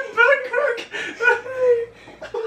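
A woman's high-pitched laughing whimper: a run of short vocal bursts that bend up and down, then one longer held note near the end.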